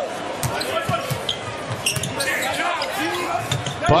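Basketball being dribbled on a hardwood arena court, a series of sharp bounces, with brief sneaker squeaks and crowd noise around it.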